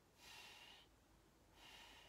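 A woman breathing out through her nose in two long, faint strokes, about a second apart: the split out-breath of a four-count breathing exercise.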